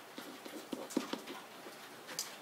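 Faint, light taps and scratches of a pen writing on an interactive whiteboard, a few small ticks close together in the first second or so.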